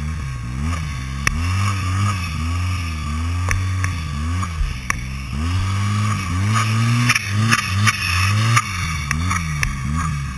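2012 Arctic Cat M1100 Turbo snowmobile's turbocharged three-cylinder four-stroke engine being revved up and down over and over while the sled is ridden through deep snow, the pitch rising and falling every second or so. Sharp clicks and clatter from the sled run through it.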